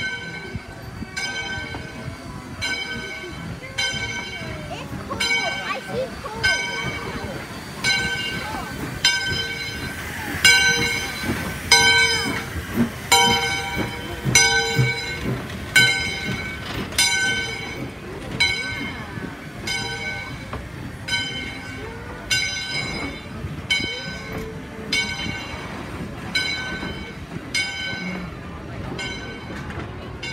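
Steam locomotive's bell ringing steadily, about one stroke every 0.8 seconds, as the passenger train moves along the station platform with the rumble and clatter of its coaches rolling past.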